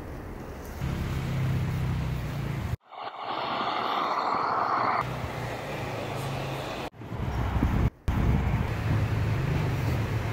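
Outdoor street noise with a low rumble of traffic, in several short clips joined together, so the sound changes abruptly about three, seven and eight seconds in.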